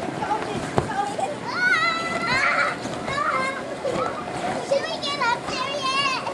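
Young children playing and shouting with high, wavering voices, in bursts about two seconds in and again near the end. A single sharp knock just under a second in.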